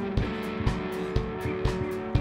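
Live rock band playing an instrumental passage, with electric and acoustic guitars holding chords over a steady kick-drum beat of about two beats a second.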